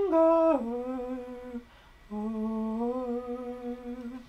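A voice humming a slow melody line: a held note that steps down about half a second in, a short break, then a long low note, held and rising slightly.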